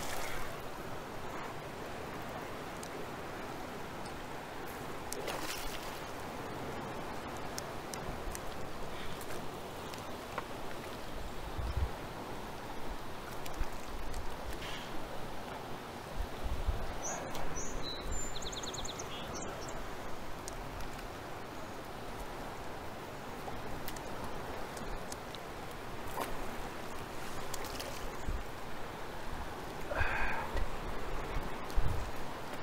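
Steady rush of river current, with a few short splashes from a hooked spring chinook salmon thrashing at the surface while it is played from the bank.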